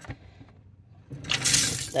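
Newly installed pull-down kitchen faucet turned on by its lever: a little over a second in, water suddenly starts running from the spout and splashing into a stainless steel sink.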